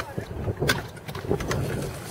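Skateboard rolling on concrete: a low rumble of the wheels with a few sharp clacks.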